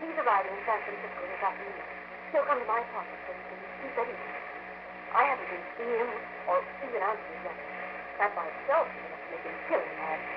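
Speech from an old radio drama recording, cut off in the treble, with a steady low hum under it.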